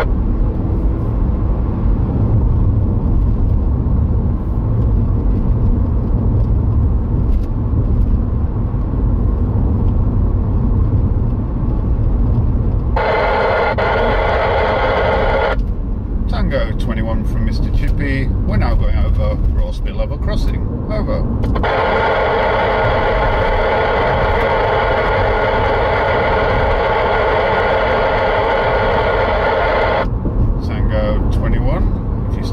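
Car road and engine rumble heard inside the cabin throughout. About halfway through, an in-car CB radio opens up on a weak, noisy transmission: a buzzing hiss that turns choppy with speech too buried in noise to make out, then settles back into a steady buzz. The signal is being heard at the edge of range from a makeshift home aerial.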